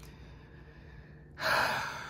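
A woman takes one audible breath after more than a second of quiet: it comes in sharply about one and a half seconds in and fades away over about a second.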